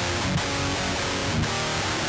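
Electric guitar played back as a DI recording taken straight from a guitar amp's speaker output, with no speaker cabinet or microphone. Without the cab the tone is harsh and fizzy, with hiss-like highs filling the top end, and it sounds a bit shite.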